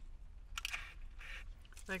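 Brief rustling and crinkling of paper, a few short bursts, as drinking straws in paper wrappers are handed out. A steady low hum runs underneath.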